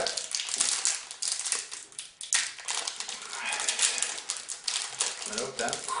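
Chocolate bar wrapper rustling and crinkling in the hands as it is unwrapped, a dense run of irregular crackles and small clicks. A voice comes in near the end.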